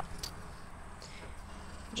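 A pause between speech filled only by faint, steady outdoor background noise, with no distinct sound standing out.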